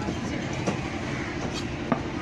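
A large knife chopping through fish onto a wooden chopping block: a couple of light strikes, then a sharper chop near the end. A steady mechanical rumble runs underneath.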